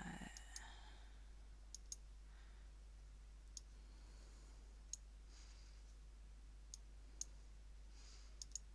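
Computer mouse clicking: about eight single sharp clicks, spaced irregularly a second or more apart, some in quick pairs, over a faint steady low hum. A brief soft noise sounds at the very start.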